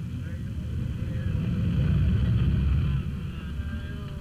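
Street traffic: a vehicle's low engine rumble that swells to its loudest about two seconds in, then drops away about three seconds in.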